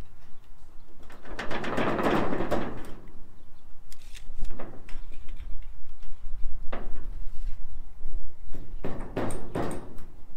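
Ribbed metal roofing panel being shoved across the wooden purlins while it pivots on one screw: a long scrape of sheet metal about a second in, then shorter scrapes and clunks, with two close together near the end.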